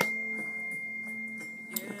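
A single high, pure ringing tone from a struck bell or fork, sounding just before and fading slowly until it stops near the end.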